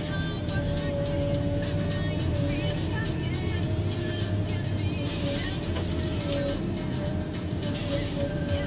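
Ponsse H8 harvester head working a spruce stem under the machine's running diesel engine and hydraulics, with a steady hydraulic whine that wavers in pitch as the load changes. Irregular short cracks run throughout as the head fells the tree and strips its branches.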